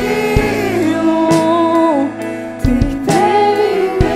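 Live worship band playing: women's voices sing long held notes over acoustic guitar, keyboard and drums, with a few drum hits, one just after the start and a louder one near the three-second mark.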